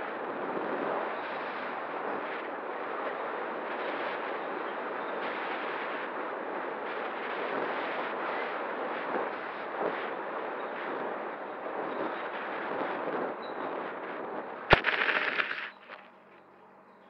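Steady rushing wind and motor noise on the onboard camera of an FPV drone flying low and fast. Near the end comes one sharp impact as it hits the ground, about a second of louder noise, then the sound cuts off suddenly.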